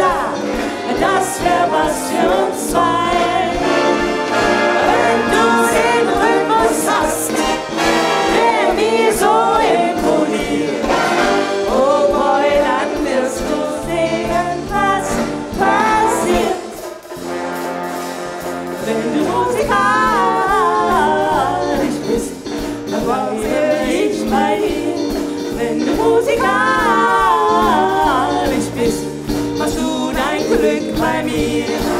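A police brass band with saxophones, trumpets, trombones, tuba and drums playing a pop-style song while several singers sing into microphones. The band thins out briefly just past the middle, then the full sound comes back.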